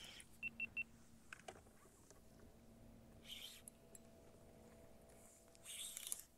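Near silence, broken about half a second in by three quick, high electronic beeps in a row, with a faint steady hum underneath.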